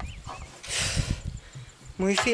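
An emptied plastic jerrycan being handled against a plastic barrel: irregular hollow knocks and bumps, with a short rush of sound about a second in.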